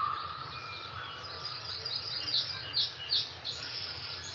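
Birds chirping: short high chirps repeating a few times a second over a steady background hiss, heard through a video call's shared audio.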